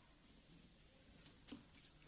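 Near silence, with one faint, brief sound about one and a half seconds in.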